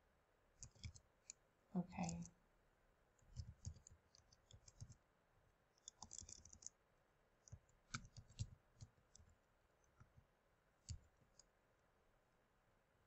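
Faint computer keyboard typing: irregular, scattered key clicks as a word is typed. A brief voice sound comes about two seconds in.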